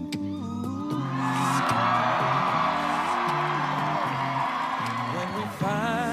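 A cappella group singing a wordless instrumental-style break: a bass voice steps through a walking bass line under held backing chords. A dense wash of audience cheering and whoops sits over it from about a second in until shortly before the sung melody returns near the end.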